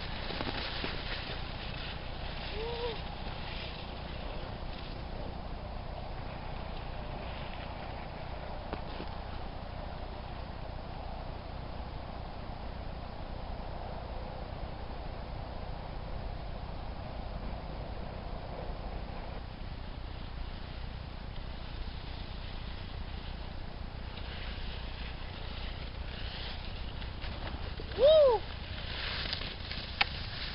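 Steady outdoor background noise with a low rumble of wind on the microphone. Near the end comes one short, loud, high cry that rises and falls in pitch.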